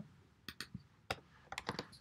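Computer keyboard typing: a few separate keystrokes, then a quicker run of them near the end.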